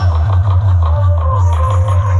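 Loud dance music from a large DJ speaker stack, with a heavy pulsing bass and a simple melodic line above it. The previous track cuts off and a new one begins right at the start.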